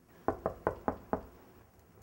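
Five quick knocks in a row, spaced about a fifth to a quarter of a second apart.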